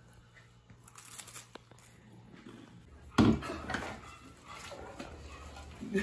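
Faint crinkling and small crunches as a cracker is eaten, then, from a sudden loud clatter about three seconds in, glass and crockery knocking as dishes are washed at a sink.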